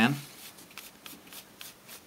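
A small pad rubbing boot polish onto a thin sheet of drink-can aluminium, giving a run of faint, quick, scratchy strokes, several a second and irregular.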